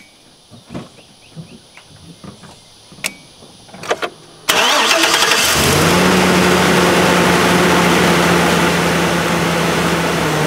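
A few scattered clicks and knocks, then about four and a half seconds in a pickup truck's engine cranks briefly, catches and settles into a steady idle. The truck is being started entirely from a portable lithium jump starter, with its battery's positive cable disconnected.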